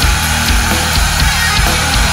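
Nu metal song: heavy drums and bass with distorted guitar, and a long held note sustained over the beat.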